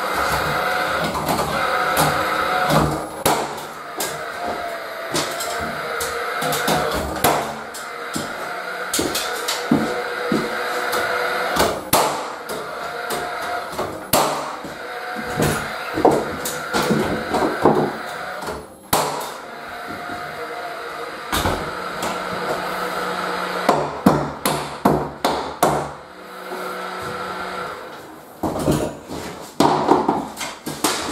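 Cordless drill driving screws into the timber studs of a stud-wall frame, whining in repeated short runs, with many knocks and clatters of wood and tool between them.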